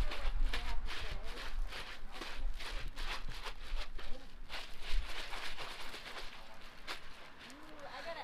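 Rapid, irregular crackling and rustling from handling a towel wrapped around a plastic bag, with a low rumble mostly in the first couple of seconds.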